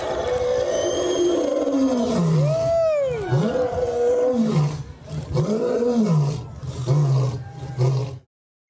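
A lion roaring in a series of about five long roars, each rising and falling in pitch.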